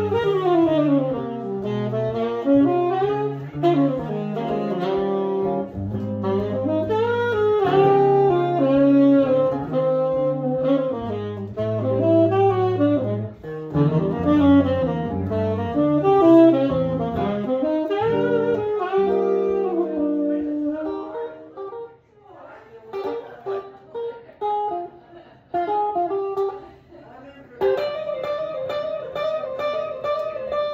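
Tenor saxophone improvising a jazz solo over electric archtop guitar chords. The saxophone phrase ends about two-thirds of the way through, leaving the guitar playing sparsely, and near the end the guitar starts a single-note solo.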